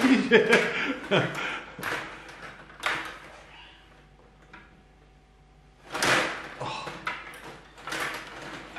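Stiga table hockey game in play: the plastic rods and player figures clatter, and the puck knocks against sticks and boards in a quick run of sharp clicks. After a short lull there is another loud burst of rattling about six seconds in.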